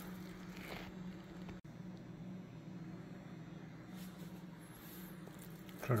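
Faint wet squishing of slow-cooked pork shoulder being pulled apart by gloved hands, over a steady low hum.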